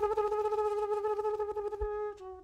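A woman's voice holding one long, steady note, sung or hummed as part of a beatbox performance. Faint clicks run beneath it, and it gently gets quieter.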